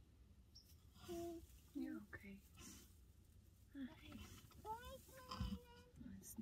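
Quiet voices in short, soft fragments close to whispering, with a brief low thump near the end.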